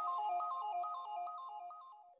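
A simple electronic melody of quick stepping notes, fading out near the end.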